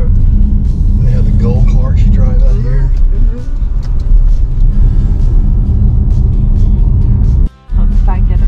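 Low road and engine rumble inside a moving car's cabin, under talk and music, with a brief dropout to near silence shortly before the end.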